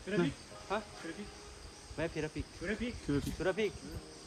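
A steady, high-pitched insect chorus, crickets or cicadas, with a person talking over it in short bursts.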